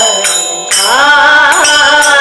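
Devotional singing in Carnatic style: a voice gliding between held notes over steady instrumental accompaniment.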